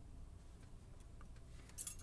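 Faint, sparse light clicks of steel tweezers handling a small brass lock pin, over a low steady room hum.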